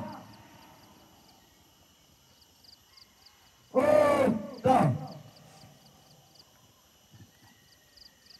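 A voice shouting two loud drawn-out calls about four seconds in, a longer one and then a short one, like commands called out to an assembled formation. Otherwise quiet, with faint high ticking in the background.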